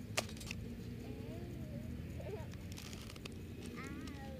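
Spectator-area ambience at a drag strip: a steady low rumble with faint, indistinct voices, a sharp click just after the start and a few lighter clicks near the end.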